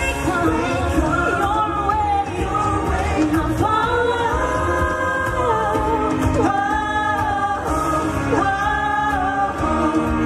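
A woman singing a pop ballad live into a headset microphone over backing music, holding several long notes that waver slightly.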